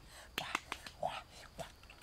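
Dry leaves and twigs rustling and snapping underfoot as a person shifts across the forest floor, a quick string of sharp clicks and crackles with short rustles between them.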